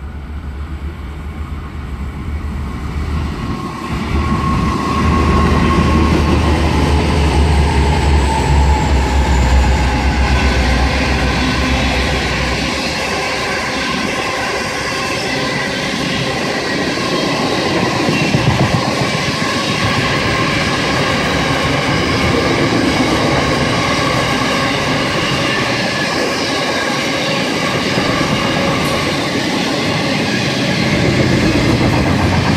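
An intermodal container freight train passing close by: its locomotives rumble past in roughly the first dozen seconds, then a long string of container wagons follows with a steady clattering of wheels over the rails.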